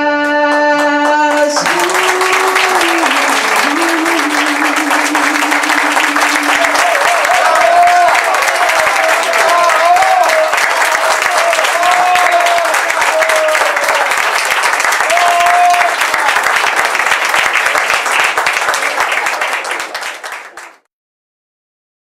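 The song's last sung note is held over the accompaniment and ends about a second and a half in. Then an audience in a small hall applauds and calls out, steady and loud, until the sound cuts off sharply near the end.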